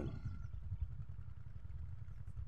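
Low, uneven rumble of wind buffeting the phone's microphone.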